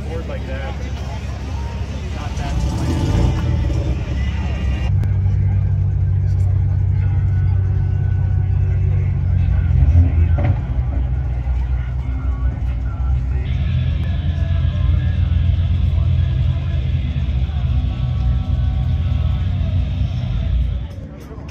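Third-generation Pontiac Firebird's V8 engine idling steadily with a deep rumble.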